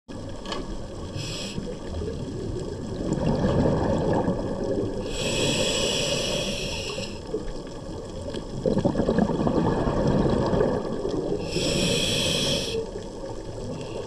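Scuba diver breathing through a regulator underwater: hissing inhalations alternate with a rumble of exhaled bubbles, in a slow breathing cycle.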